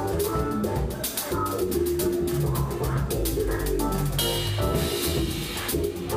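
Live funk band playing: a drum-kit groove with dense hits under sustained upright-bass notes run through an MXR Bass Envelope Filter, with electric guitar and keys.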